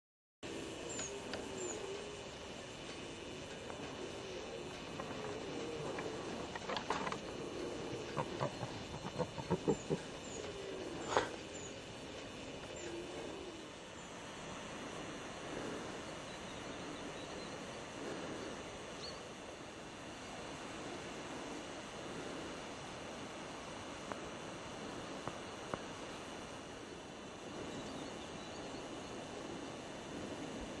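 Outdoor background noise with repeated short animal calls in the first half, some brief high chirps, and a cluster of clicks and knocks about seven to eleven seconds in, the sharpest near eleven seconds.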